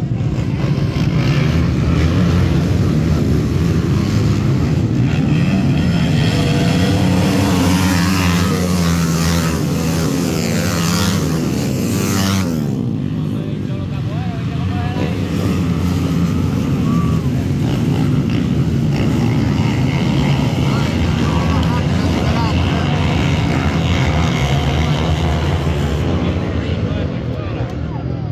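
A pack of motocross dirt bikes racing, engines revving hard and climbing in pitch to a peak about twelve seconds in as the field goes by, then running on at a steadier level.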